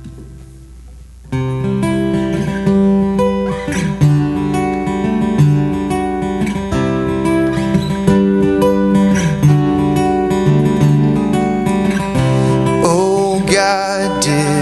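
Two acoustic guitars playing the intro of a song, strumming in strongly about a second in after a fading chord. A man starts singing near the end.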